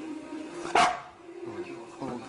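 A Shiba Inu gives one short, very soft, breathy bark about three-quarters of a second in.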